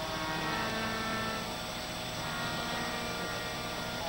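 Harmonium holding a quiet, steady sustained chord between verses of Sikh kirtan, without tabla.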